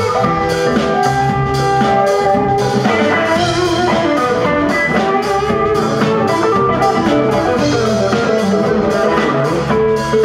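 Live rock band playing: electric guitars over bass, drum kit and keyboard, with a steady beat.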